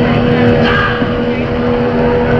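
A garage-punk band playing live through heavily distorted electric guitars, a dense wall of noise with a steady held note ringing over it.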